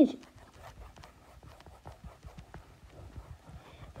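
Faint, irregular clicks and taps of a stylus on a tablet screen while handwritten annotations are erased.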